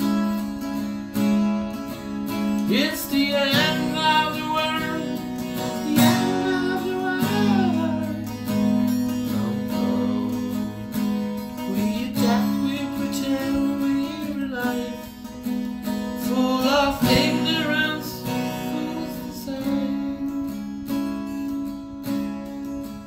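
Acoustic guitar strummed steadily, playing chords through an instrumental passage of a song.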